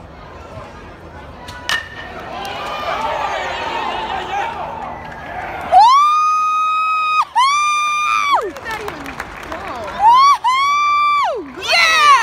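A sharp crack of a bat hitting a baseball about two seconds in, the hit that goes for a home run, followed by a crowd cheering. From about six seconds on, several long, loud, high-pitched 'woo' shrieks close by, each rising at the start and sliding down at the end.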